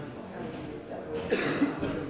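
A roomful of people talking at once in small groups, a hubbub of overlapping conversation, with a cough a little over a second in.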